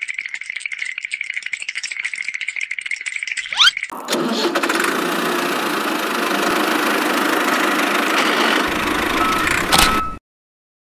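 A toy tractor's engine being started: a fast ticking rattle over a steady high whine for about four seconds, a short rising whistle, then the engine catches and runs steadily with a dense rattle until it cuts off suddenly at the end.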